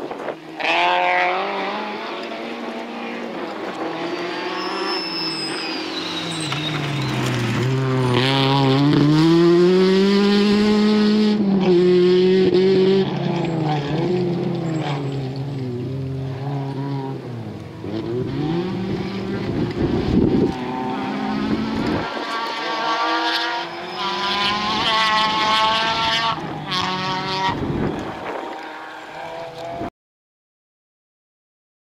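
Peugeot 206 RC rally car's four-cylinder engine revving hard on a gravel stage, its pitch climbing and falling again and again with each gear change and lift.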